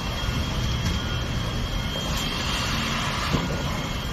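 Steady rumbling roar of a large fire burning through a multi-storey car park, with a thin steady high tone running through it and a small knock near the end.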